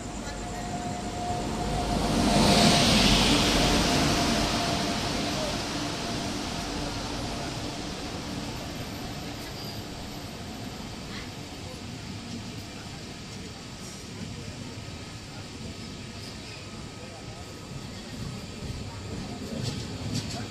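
Indian Railways passenger train with LHB coaches arriving, with no horn. The locomotive passes loudest about three seconds in, and the coaches then roll by with steady wheel-on-rail noise that slowly fades.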